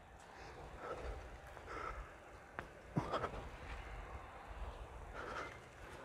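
A man's faint, breathy exhalations, several spaced puffs, from the effort of pulling up on a bar, with a single sharp click about two and a half seconds in.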